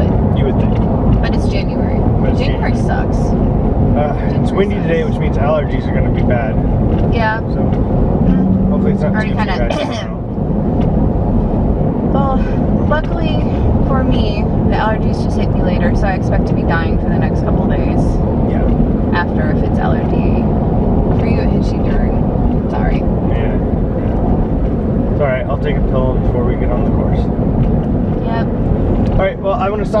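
Steady low rumble of a moving vehicle, with indistinct voices over it.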